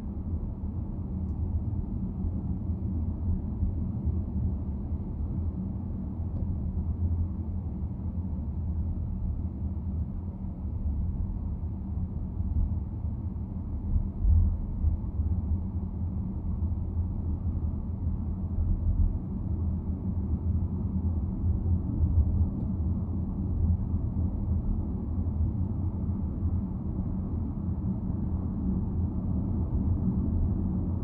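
Steady, low, muffled rumble of a car driving at highway speed, mostly tyre and road noise with the engine.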